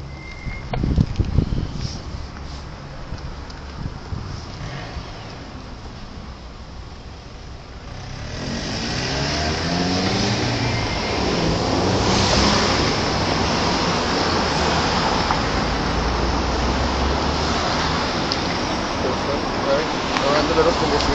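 Road traffic at a city intersection: cars driving past close by, the noise swelling from about eight seconds in and staying loud, with engine notes rising and falling as they accelerate. A few low thumps on the microphone about a second in.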